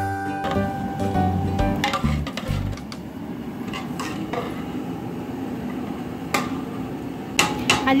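Marinated meat going into hot oil in a large metal biryani pot (degh) and sizzling steadily, with a few sharp knocks of a metal ladle against the pot. Background music plays over the first three seconds, then stops.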